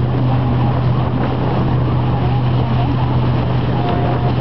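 Correct Craft wakeboard boat's inboard engine running steadily under way, a constant low drone, with wind and water rushing past the hull.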